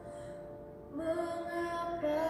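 A young woman singing a solo song with music behind her: the accompaniment carries on softly for a moment, then she comes in with a new sung phrase about a second in.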